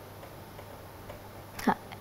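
A pause in speech: faint room tone with a steady low hum, and one brief vocal sound near the end.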